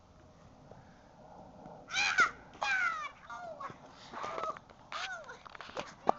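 A person's high-pitched, wordless cries: a run of short calls, each bending up and then down in pitch, starting about two seconds in.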